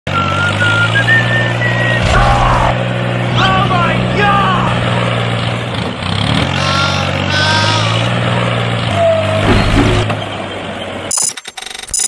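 Tractor engine running steadily with a low hum, with short high-pitched vocal squeals over it. The hum drops out briefly about six seconds in, then stops about a second before the end and gives way to rapid clicking.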